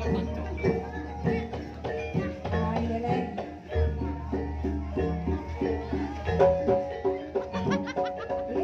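Live Javanese Jaranan Buto dance music: an ensemble of drums and pitched percussion plays a brisk, repeating pattern of short struck notes over a steady low drone.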